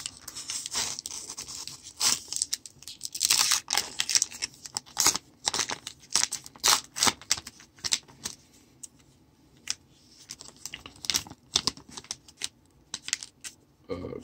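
Plastic wrapper of a Topps baseball card pack crinkling and tearing as it is worked open by hand, in irregular crackles and rips. The pack is stubborn to open.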